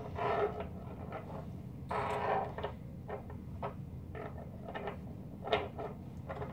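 Small rocks being handled and set down in a circle: scattered hard clicks as they knock together or on a surface, with a couple of short scraping rustles, over a steady low room hum.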